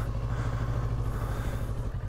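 Kawasaki Versys 650's 649 cc parallel-twin engine running steadily as the motorcycle rides along at low speed.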